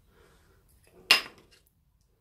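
A single sharp knock about a second in, with a brief ringing tail, from a plastic paint-pour cup and small canvas being handled on the work table.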